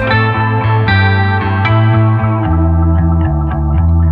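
Band music without drums: electric guitar through effects and bass guitar playing held chords and notes. A few light ticks come in near the end.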